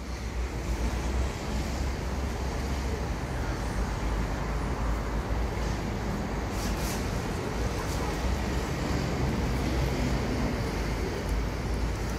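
Urban street noise: a steady wash of road traffic with a heavy low rumble.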